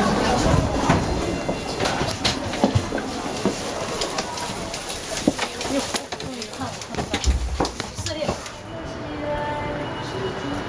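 Crowd ambience of passengers at a high-speed rail platform and in a train carriage: indistinct background talk over a steady hubbub, with scattered clicks and knocks of footsteps and luggage. A heavy low thump comes about seven seconds in.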